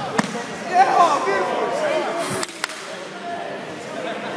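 Sharp slaps of kickboxing kicks and punches landing on gloves and protective padding: one near the start and two close together about two and a half seconds in. Spectators shout, loudest about a second in.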